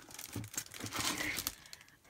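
Packaging crinkling and rustling in irregular bursts as hands rummage inside a cardboard box and pull out an item in a plastic sleeve.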